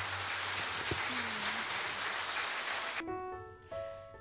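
Audience applauding steadily at a moderate level as a loud musical passage dies away. About three seconds in, the applause fades and a few soft, held instrument notes come in.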